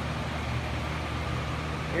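Greenhouse wall-mounted exhaust fan running with a steady low hum.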